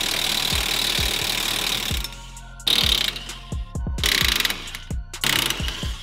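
Cordless impact wrench hammering at rusted leaf-spring U-bolt nuts on a rear axle: one continuous run for about two seconds, then several shorter bursts.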